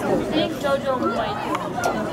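Spectators talking near the microphone, several voices overlapping in casual chatter.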